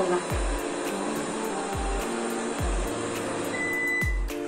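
Cecotec Conga robot vacuum running under background music with a steady, deep beat. A short high beep sounds near the end.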